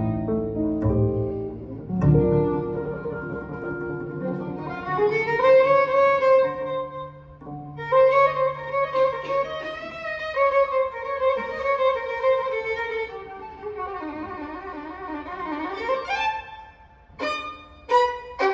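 Violin playing a slow solo melody with sliding, wavering notes, accompanied by acoustic archtop guitar and double bass in a gypsy-jazz ballad. Near the end the violin breaks into a run of short, quick notes.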